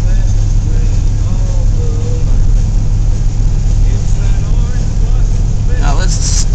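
Steady low rumble of a car's cabin at speed: engine and tyres on wet pavement.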